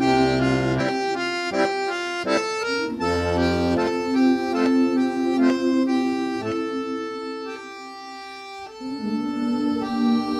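Diatonic button accordion playing an instrumental passage of held chords over a steady bass. It drops to a softer, sparser line about seven seconds in, and the full chords come back near the end.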